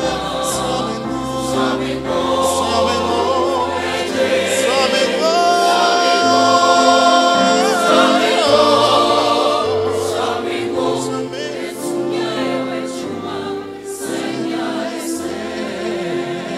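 Mixed choir of men's and women's voices singing in parts, swelling to a long held chord about five seconds in, then moving on.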